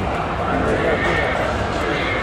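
A horse neighing: one long whinny that rises and falls in pitch, starting about half a second in, over a background of voices.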